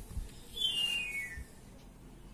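A soft tap of a calculator key at the start, then a single short whistle-like chirp that falls steadily in pitch, from a source that cannot be seen.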